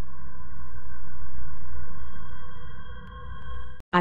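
Electronic intro drone: several steady held tones over a low rumble, with a higher tone joining about halfway through, fading out near the end and then cutting off.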